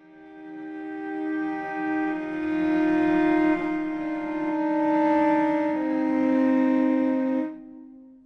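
Sampled solo strings from the Spitfire Solo Strings library, played from a keyboard: several long bowed notes layered into a slow chord, the notes changing one at a time. It swells in from quiet at the start and dies away near the end.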